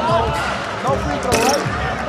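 A basketball bouncing on a hardwood court, about two bounces a second, with voices over it.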